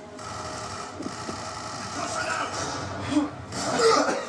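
Quiet, indistinct voices murmuring in a small room over a faint steady hum.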